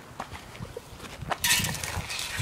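A few faint ticks, then about one and a half seconds in, a loud rough scraping and crunching of gravelly dirt being disturbed.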